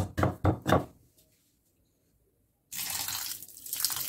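Wooden pestle crunching broken slate pencils in a stone mortar, a few quick strokes in the first second. After a pause, water is poured into the mortar near the end, a steady splashing pour.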